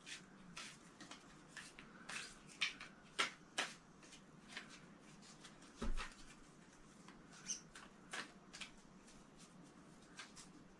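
Tarot cards being handled and pulled from a spread on a table: faint, scattered light clicks and taps, with a soft thump about six seconds in.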